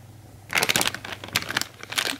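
Plastic bag of frozen berries crinkling as fingers press and handle it, in irregular crackles starting about half a second in.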